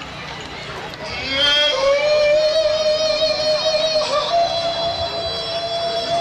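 Live gospel performance: after a second of crowd noise, a single long high note rings out and is held, wavering slightly and stepping up a little partway through.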